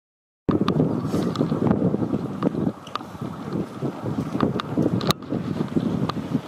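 Wind buffeting the microphone in irregular gusts, starting abruptly about half a second in, with scattered footfalls of runners' shoes on the asphalt road.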